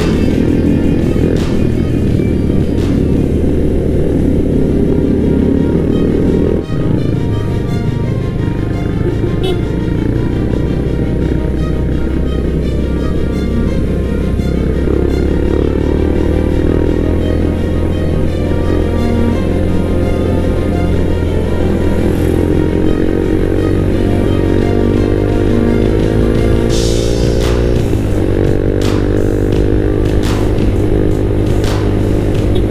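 Background music over the running engine of a motorcycle, whose pitch climbs several times in the second half as it accelerates.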